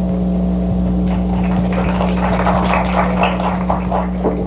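Audience applauding, starting about a second in and building into dense clapping, over a steady electrical hum in the recording.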